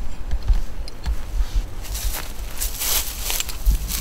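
Rustling and crunching of dry leaf litter underfoot, irregular and uneven, with a louder rustle about three seconds in, over low irregular bumps of handling or wind on the microphone.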